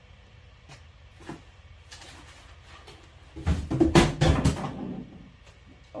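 Off-camera rummaging in a small room: a few light clicks and taps, then a louder clatter of knocks and rustling about three and a half seconds in, lasting over a second.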